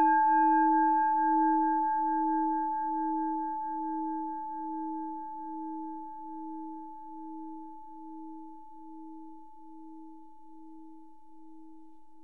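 A Buddhist bowl bell rings out after a single strike just before this, its clear tones fading slowly and evenly, with a slow pulsing beat in its low hum.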